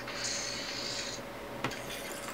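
A brief rasping rub lasting about a second, followed by a single click.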